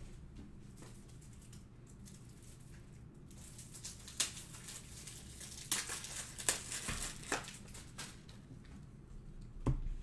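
Plastic crinkling and clicking as trading cards are handled and put into protective cases: faint for the first few seconds, then a cluster of sharp crackles in the middle, and a low thump near the end.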